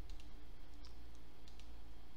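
A few faint, scattered computer-mouse clicks over a steady low electrical hum.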